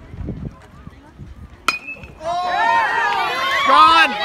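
A metal baseball bat pings once, sharp with a short ring, as it drives the first pitch for a home run about one and a half seconds in. Half a second later spectators break into loud yelling and cheering, louder than the hit.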